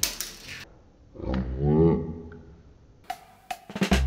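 A short voice-like sound with a bending pitch about a second in, then a cymbal-like crash and drum hits near the end as upbeat swing music starts.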